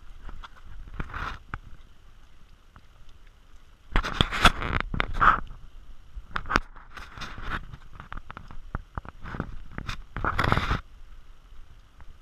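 Footsteps crunching on a dirt trail strewn with dry leaves, with scraping and rubbing right at the body-worn camera. The loudest rough bursts come about four to five and a half seconds in and again near ten seconds, with scattered clicks between.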